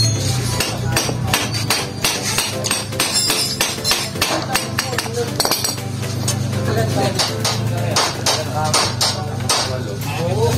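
Repeated, irregular sharp knocks of a hammer on metal, several a second, over steady background music.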